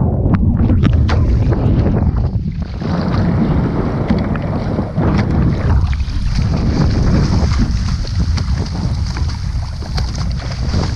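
Wind rumbling on the microphone of a camera at the surface of a choppy sea, with seawater splashing and sloshing close around it.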